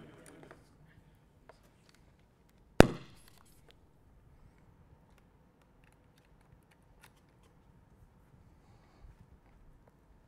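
One sharp pop or click about three seconds in, with a few faint handling ticks around it, while a hardware synth unit is rebooted in a quiet room.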